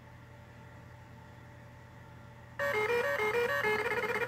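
A faint steady low hum, then, about two and a half seconds in, a short melody of electronic tones stepping up and down for over a second.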